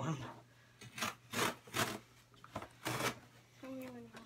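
Scissors cutting through a taped cardboard box: four short cuts spread over about two seconds.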